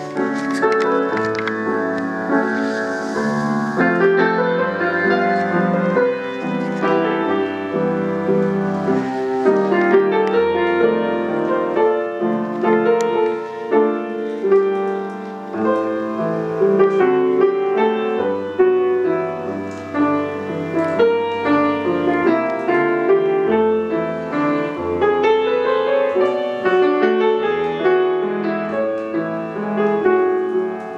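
Solo grand piano playing a waltz: a flowing melody over low bass notes that change every second or two, without a break.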